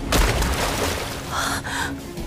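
A character's voice giving two short, sharp gasping breaths near the end, after a sudden loud burst of fight sound effect at the start.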